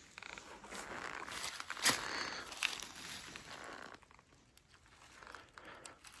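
Rustling and crinkling of dry fallen leaves and fur as a hand strokes and handles a dead coyote, with a sharp crackle about two seconds in; it goes quieter after about four seconds.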